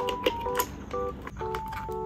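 Background music, a simple melody of steady clear tones, with a few sharp plastic clicks and knocks in the first second from the keyboard being handled.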